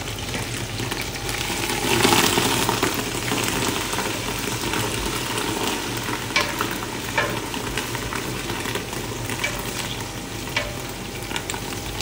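Chopped coriander and onions sizzling in oil in a large stainless steel stockpot, stirred with a wooden spoon. The sizzle swells about two seconds in, and the spoon knocks lightly against the pot a few times.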